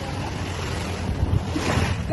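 Small waves washing onto a stony shore, with wind rumbling on the microphone; the wash swells louder near the end.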